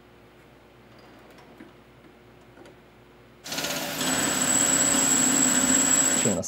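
A few faint light taps, then a South Bend SB1001 metal lathe starts up suddenly a little past halfway and runs steadily, turning a round bar with the cutting tool, with a thin high-pitched whine over the machining noise.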